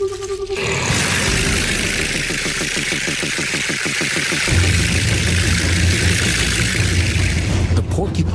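Cape porcupine shaking its hollow quills: a steady, dry hissing rattle that is its warning to an intruder. It plays over documentary music, whose low drone swells about halfway through.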